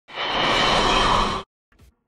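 Short audio sting of a channel's logo intro: a dense burst of sound that swells in quickly, holds, and cuts off abruptly after about a second and a half.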